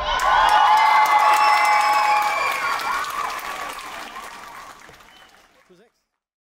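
Audience applauding and cheering, with sustained high-pitched shouts over the clapping, fading away over the last few seconds.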